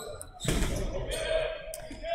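Dodgeballs thudding and bouncing on a hardwood gym floor, with a sudden thud about half a second in, under distant players' voices.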